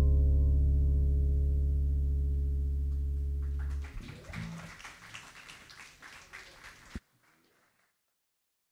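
A small band's final chord of bass guitar, acoustic guitar and keyboard rings out and slowly fades, then is damped about four seconds in. Light applause follows and cuts off abruptly near the end.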